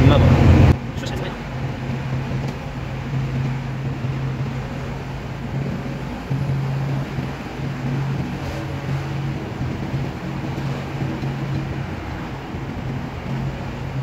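Heavy truck's diesel engine running steadily at highway cruising speed, heard inside the cab as a low hum with road and wind noise; the truck is carrying a load of about 54 tonnes.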